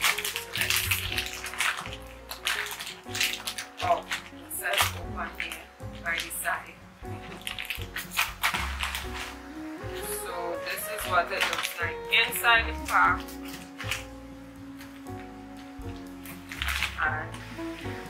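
Soft background guitar music, with a plastic snack bag crinkling and rustling as it is opened and a chip is taken out.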